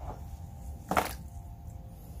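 Sheet of marble hex mosaic tile being lowered into a plastic tub of stone sealer, with one short sharp knock about a second in over a low steady background.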